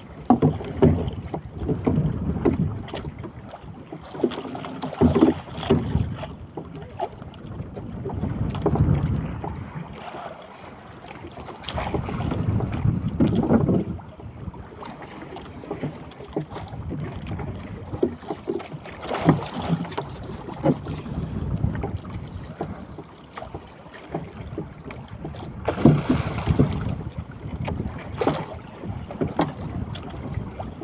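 Water slapping and sloshing against the hull of a small outrigger boat on choppy sea, in irregular surges, with wind buffeting the microphone.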